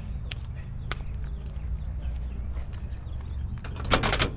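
Scattered soft steps and handling noise over a steady low rumble, then near the end sharp metallic clicks as the push-button door handle of a 1966 GMC pickup is pressed and the door latch releases.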